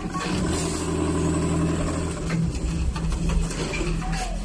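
Automatic sleeve placket sewing machine with a Brother 7300 sewing head running at speed, a steady mechanical hum that shifts a little about halfway through.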